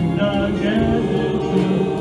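A mixed choir of men's and women's voices singing a slow worship song in held notes.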